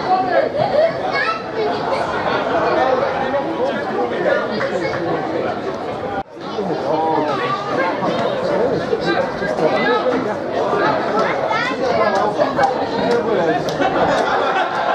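Indistinct chatter of many voices talking over one another, with no words standing out. It cuts out briefly about six seconds in, then carries on.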